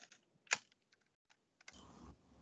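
Keystrokes on a computer keyboard: a few scattered clicks, the loudest about half a second in. A low steady background noise comes in near the end.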